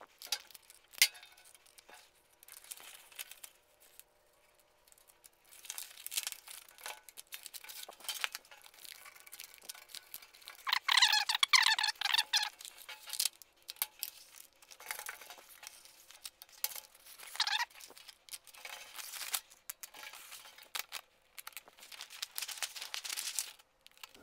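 Backing liner being peeled off adhesive anti-slip traction tape and the tape laid onto steel checker plate: irregular crackling and crinkling in bursts, with a louder ripping stretch about halfway through.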